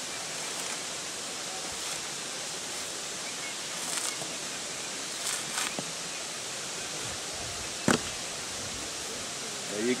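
Steady rush of running water. Over it come brief dry rustles about four and five and a half seconds in as coconut husk fibres are torn off by hand, and a single sharp knock a little before eight seconds in.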